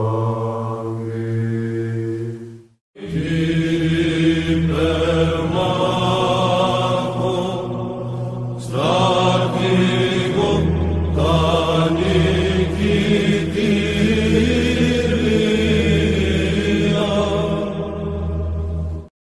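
Orthodox church chant: voices singing a slow, wavering melody over a held low drone. It breaks off for a moment about three seconds in, then starts again and carries on, with a short dip about halfway.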